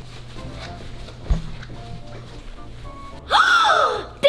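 Soft background music, with a short thump about a second in. Near the end, a child's loud, drawn-out surprised "ooh" that falls in pitch.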